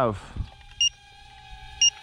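Drocon DC-65 Mirage mini drone's low-voltage cutoff (LVC) alarm chirping: two short, high beeps about a second apart, the sign that its internal battery has run down to the low-voltage warning.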